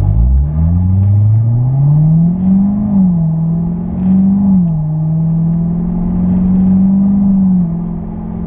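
2017 Corvette Stingray Z51's 6.2-litre LT1 V8, heard from inside the cabin, accelerating under power: the engine note climbs, falls as the automatic gearbox upshifts about three seconds in, climbs again and falls with a second upshift a second and a half later, then holds steady and dips once more near the end.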